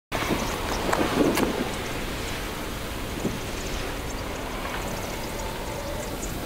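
Steady outdoor background noise with a low rumble, with a few sharp clicks and a louder stretch in the first second and a half.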